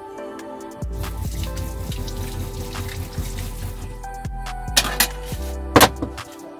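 Water running from a faucet into a small sink, starting about a second in, with two short loud splashy bursts near the end, over soft background music.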